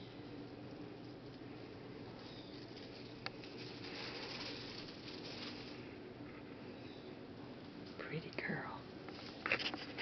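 Faint whispering over quiet room tone, with a single soft click about three seconds in. Near the end come a few short voice sounds that bend in pitch.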